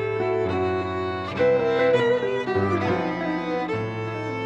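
Live chamber ensemble music: a violin plays a slow melody of held notes over sustained low notes.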